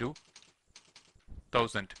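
Typing on a computer keyboard: a quick run of key clicks, with a short stretch of a man's speech about one and a half seconds in.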